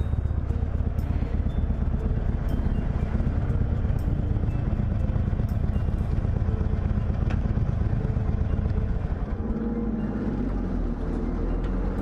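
Harley-Davidson Iron 883's air-cooled V-twin engine running as the motorcycle rolls slowly along, then settling to a steadier, lower idle about nine and a half seconds in as it pulls up to park.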